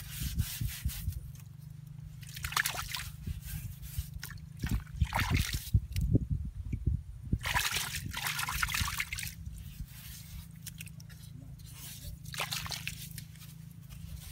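A hand sloshing and splashing in shallow muddy water at the bottom of a dug pit, in four or five separate bursts, over a steady low hum.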